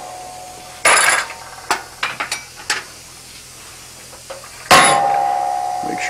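Hammer blows on a steel letter stamp held in tongs, stamping "S7" into the red-hot tool-steel handle of a chisel. There are two hard strikes about four seconds apart, each leaving a ringing tone, with a few lighter metal clinks between them.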